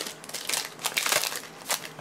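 Foil wrapper of a Panini Playbook football card pack crinkling as it is handled: a fast, irregular run of crackles.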